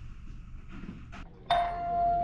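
Door entry chime sounding as a door is opened: a single steady electronic tone that starts suddenly about one and a half seconds in and keeps ringing.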